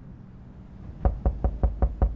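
Rapid knocking on a door: a quick run of about five sharp raps, evenly spaced at about five a second, starting halfway through.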